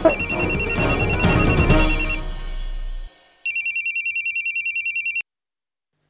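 Mobile phone ringing with a rapidly trilling electronic ringtone, in two bursts: a fainter one at the start and a louder one from about halfway. The ring cuts off abruptly as the call is answered.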